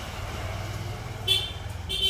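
Street traffic: a steady low vehicle rumble with two short horn toots, one about a second and a half in and one near the end.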